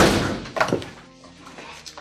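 A sudden loud thud that rings out for about half a second, with a softer knock shortly after, over background music.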